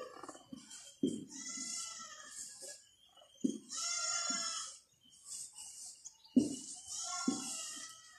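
Dry-erase marker squeaking and scraping across a whiteboard in several long strokes, each about a second long, with a light tap as the tip meets the board.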